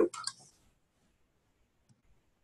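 A woman's voice trails off in the first half-second, then near silence with one faint click just before the end.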